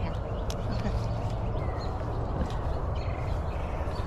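Steady outdoor background noise with a low rumble, a light click about half a second in and faint distant voices.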